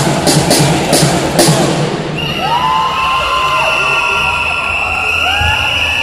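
Cheerdance routine music with a pounding beat that stops about two seconds in, followed by cheering with long high-pitched shouts and screams.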